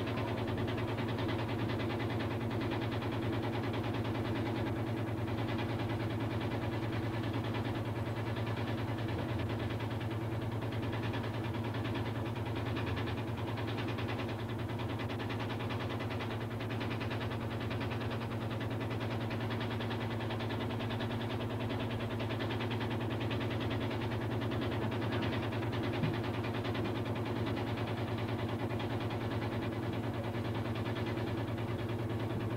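A steady low mechanical hum, unchanging throughout, with a single brief tick near the end.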